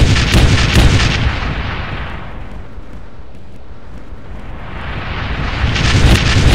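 Explosion-style booming impact sound effects: a run of heavy hits in the first second, a rumbling wash that fades out and swells back up, then more hits near the end.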